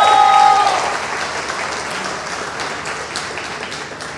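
Large audience applauding, loudest at the start and steadily dying away. A long, held shout from someone in the crowd rings over the clapping in the first second.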